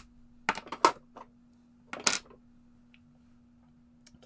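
Clear photopolymer stamps and acrylic stamp blocks clacking as they are handled and set down on the work mat: a few sharp clicks, the loudest just under a second in and about two seconds in.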